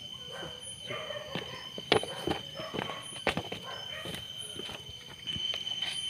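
Footsteps on a path at night: irregular scuffs and knocks underfoot. Behind them runs a steady high-pitched insect trill.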